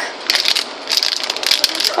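Plastic food packaging crinkling in a run of quick crackles as it is handled to be opened.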